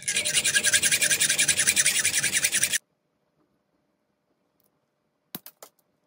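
Hacksaw cutting into the steel jaw of a pair of pliers, in fast, even back-and-forth strokes with a harsh metallic rasp; it stops abruptly after nearly three seconds. A few short clicks follow near the end.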